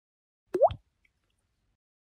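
A single water-drop plop sound effect on an animated logo intro: a sharp click followed by a quick upward-gliding bloop, about half a second in.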